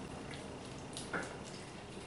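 Faint wet squelching and scraping of a spatula working thick cheesecake batter in a plastic blender jar, with one slightly louder scrape just over a second in.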